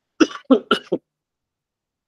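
A person clearing the throat with about four quick, short coughs, all within the first second.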